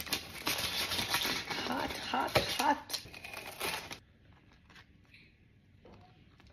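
A knife sawing through the crisp, golden-brown crust of a sheet of focaccia, with the parchment paper under it crinkling. The crackling cutting noise lasts about four seconds and then stops, leaving only a few faint ticks.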